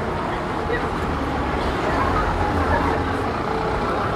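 A car driving slowly past close by on a paved street, its engine and tyre rumble growing louder towards the middle as it passes, with passers-by talking.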